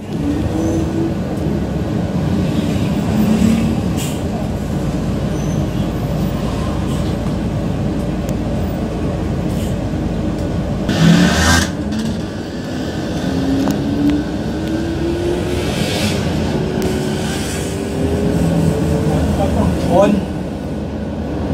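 City bus heard from inside the cabin while moving: steady engine and road noise, with a whine that rises in pitch over several seconds in the second half as the bus picks up speed. A short, louder sound cuts in about eleven seconds in.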